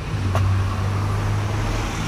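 A motor running with a steady low hum, with one light click about a third of a second in.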